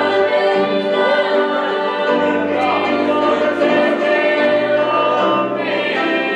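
Live gospel music: singing in long held notes over keyboard and electric bass accompaniment.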